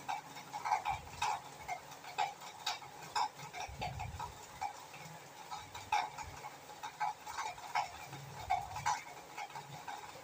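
Frying in a steel kadhai: oil with ginger-garlic paste and bay leaves crackling and popping irregularly, a few pops a second, while a metal spatula stirs against the pan.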